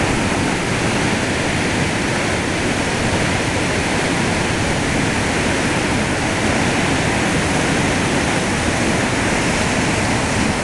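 Steady, loud rushing of white water pouring over a weir.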